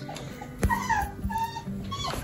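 Soft-coated Wheaten Terrier whimpering: a few short, high whines, each bending slightly in pitch.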